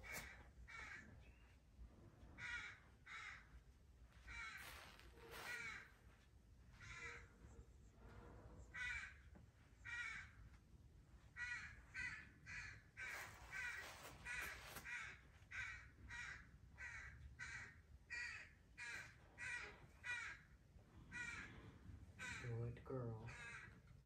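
A bird calling faintly over and over, its short calls coming singly or in quick series of two to four, about half a second apart.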